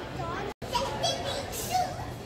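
Voices, a young child's among them, with a brief dropout about half a second in where the video cuts.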